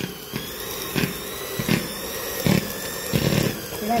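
Arno electric hand mixer running steadily, its beaters churning lumps of butter in a plastic bowl. The motor whine is broken by about five irregular knocks as the beaters hit the bowl and the lumps.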